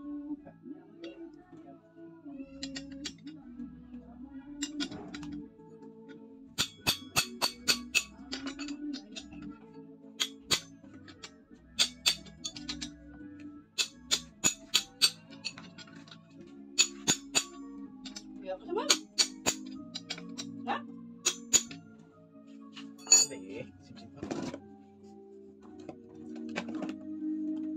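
Background music with a melody over a run of sharp metallic clinks and taps, some in quick clusters, from hand tools and small parts being handled on a brush cutter's engine.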